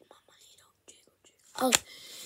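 A child whispering faintly under his breath, then saying "okay" aloud near the end.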